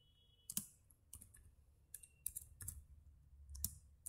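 Faint computer keyboard keystrokes, about eight separate taps at an uneven pace.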